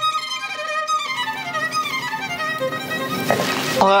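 Violin music playing, with a run of notes falling in pitch about a second in.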